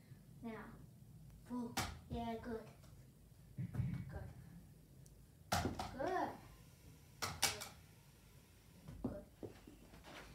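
A child's voice in short untranscribed exclamations and vocal sounds, broken by a few sharp knocks: the loudest about five and a half seconds in, then two close together about seven seconds in.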